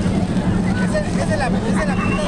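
Chatter of many people in an open square, with scattered voices over a steady low drone.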